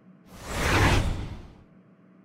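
A rushing whoosh sound effect that swells in about a quarter of a second in, peaks near the middle and fades away before the end. It is a transition effect for a character's change of look.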